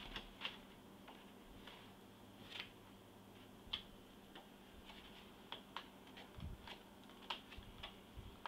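Sheets of a scrapbook paper pad being flipped by hand, giving faint, irregular light ticks and rustles, over a low steady hum.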